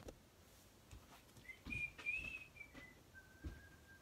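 Faint whistling of a few notes that step down, ending on a longer, lower held note, with a few soft knocks in the room.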